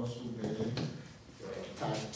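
A man lecturing, his speech broken by a short click or knock.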